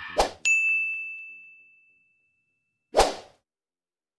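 Sound effects of an animated subscribe button: a short noisy burst, then a bright bell ding that rings out and fades over about a second and a half. A second short noisy burst comes about three seconds in.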